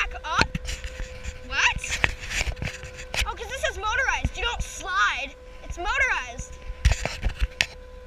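Children whooping and shrieking in high, rising-and-falling calls while riding a zip-line chair. Under them runs a steady whine from the trolley wheels running along the cable, with wind rumbling on the microphone and a few sharp knocks, the loudest near the end.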